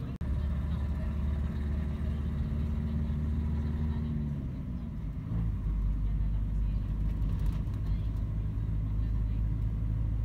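Vehicle engine and road noise heard from inside the cabin while riding. A steady hum with several tones drops in pitch around four to five seconds in, then gives way to a louder, even low rumble.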